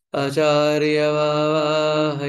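A man chanting a prayer, holding one long note at a steady pitch that begins just after the start.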